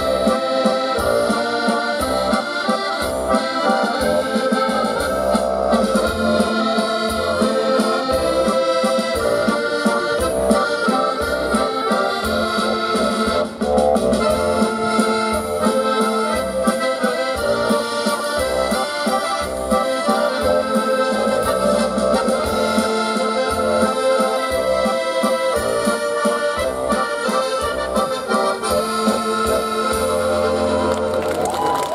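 Live accordions playing an instrumental tune over an electronic keyboard, with a steady, even bass beat.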